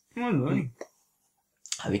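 A man talking, broken in the middle by a short click and about a second of dead silence before he speaks again.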